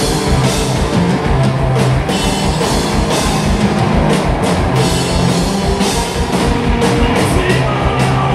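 Live heavy rock band playing loud: electric bass, distorted electric guitar and a drum kit with a fast, driving kick drum and crashing cymbals.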